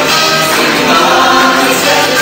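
A live worship band playing, with a group of singers singing together into microphones over amplified band accompaniment, in held notes.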